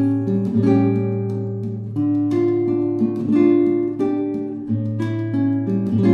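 Background music: an acoustic guitar playing a slow tune of picked notes and chords.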